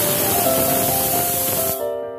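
Prestige pressure cooker letting off a whistle: steam rushes out hissing from under the lifted weight valve, then cuts off abruptly near the end.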